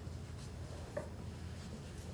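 Low steady room hum with a few faint, brief rustles and ticks of paper notes being handled near a table microphone.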